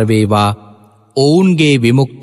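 A Buddhist monk's voice intoning a Pali verse in a chant-like recitation. A short phrase is followed by a pause, then one long syllable drawn out with its pitch rising and falling.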